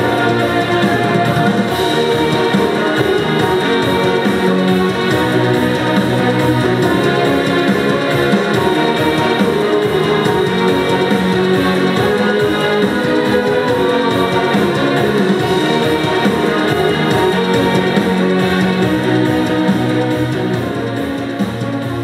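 Music played at full volume through a wall-mounted Panasonic compact stereo, heard through the room; its sound is a little bit muffled.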